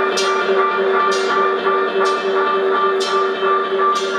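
Dub steppers music played loud through a sound system, with the bass line dropped out of the mix. What remains is a drum strike about once a second over a repeating pulsing chord pattern.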